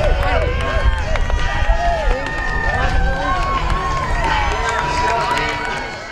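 A crowd of people cheering and calling out over one another, with rising and falling whoops and shouts.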